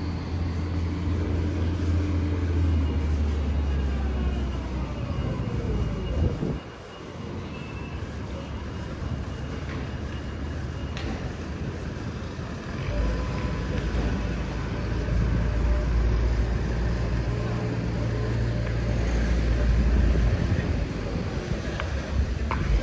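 Street traffic: motor vehicles passing close by with a low engine rumble, one going past about six seconds in, then another heavy rumble building in the second half.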